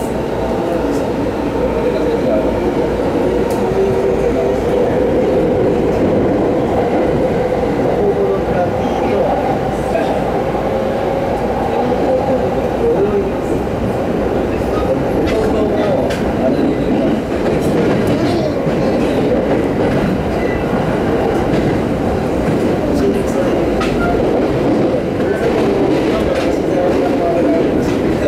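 Rinkai Line 70-000 series electric train running at speed, heard from inside the car: a steady rumble of wheels on rails with a wavering motor hum and a few clicks from rail joints.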